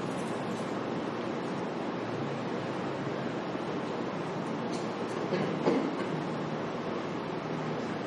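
Steady room noise, a low hum under an even hiss, with one soft knock a little before six seconds in.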